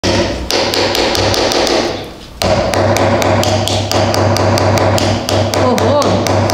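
A plastic spoon tapping rapidly and evenly on a small white toy egg, about five taps a second, chipping at the shell to crack it open.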